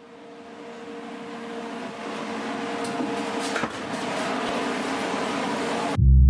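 Commercial kitchen equipment running: a steady mechanical hum and hiss that fades in, with a few faint clicks near the middle.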